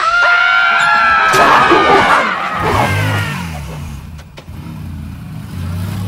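A long, high-pitched scream of 'aaaagh' lasting about two and a half seconds, followed by a Yamaha Stryker V-twin cruiser motorcycle's engine revving as the bike pulls away, rising and falling, then swelling again near the end.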